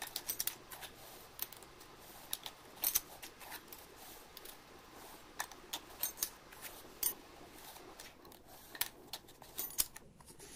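Thin aluminum cooling fins clicking and scraping as they are pushed along a brass cylinder and over its threaded end with a plastic pusher. Irregular light metallic clicks, several close together near the start and again around the middle.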